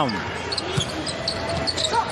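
Basketball being dribbled on a hardwood court, faint thuds under the steady background noise of a large arena.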